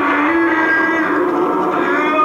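Film soundtrack music: long held notes that shift slowly in pitch.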